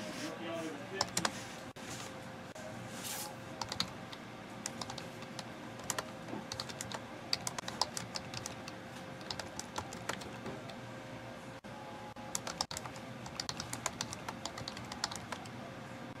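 Typing on a computer keyboard: irregular runs of quick key clicks with short pauses between them, over a faint steady hum.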